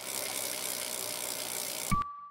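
Bicycle wheel freewheel hub ticking rapidly and steadily as the wheel spins. Near the end comes a sharp hit with a short, clear ding.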